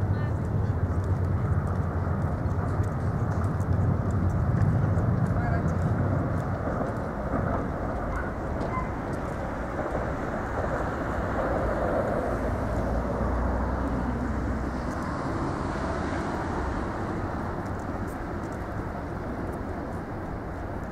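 Outdoor city ambience by a river: a steady rumble of traffic with indistinct voices mixed in.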